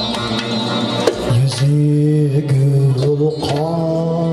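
Live Uzbek folk-pop music: a plucked long-necked rubab and an electronic keyboard with a drum beat. A man's voice comes in on long held notes about a second in.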